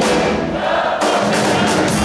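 Live rock band playing, with electric guitars and drums. The bright top of the sound thins out for about the first second, then the full band comes back in.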